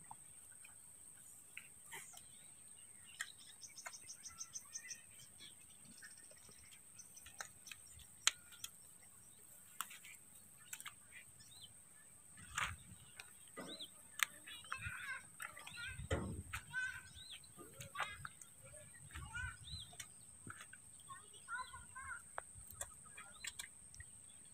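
Faint open-air ambience of small birds chirping and calling: a quick trill about four seconds in, then many short rising and falling chirps through the second half. Under it runs a steady high-pitched whine, with scattered small clicks and a few soft low rustles.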